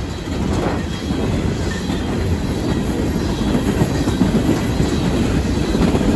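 Empty coal train's hopper cars passing close by at about sixty miles an hour: a steady rumble and clatter of steel wheels on the rails.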